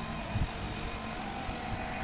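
A diesel engine running steadily with a low rumble, and a few soft low thumps of wind on the microphone.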